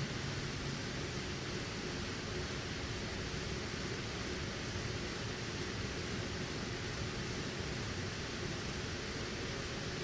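Steady, even hiss of room background noise and recording hiss in a lecture room, with no distinct sounds standing out.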